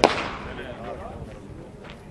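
A single sharp crack of a starter's pistol firing the start of the run, ringing out over about half a second.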